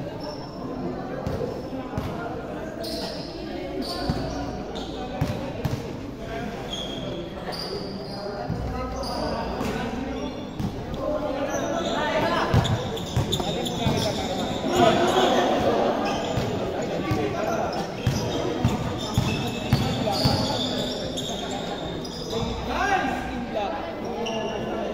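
A basketball bouncing and dribbling on an indoor court during play, with short high shoe squeaks and players' voices in a large, echoing hall. The play gets busier about halfway through.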